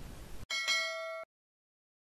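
A bright bell-ding sound effect for clicking a notification-bell button. It comes in about half a second in, after a brief hiss, rings for under a second and cuts off abruptly.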